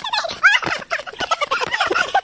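A group of people laughing in quick, pitched bursts, with short rising yelps.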